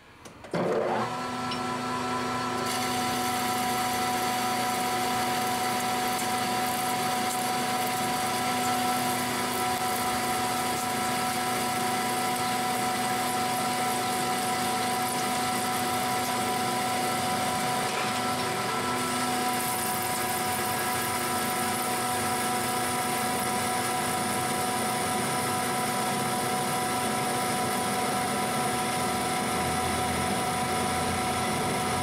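Metal lathe running with a steady whine of several tones while its tool takes a heavy 0.075-inch facing cut on a cold-rolled steel part. The sound steps up about a second in, and a hiss of cutting fills in on top from about three seconds in.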